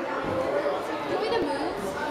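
Indistinct background chatter of several voices in a large gym hall.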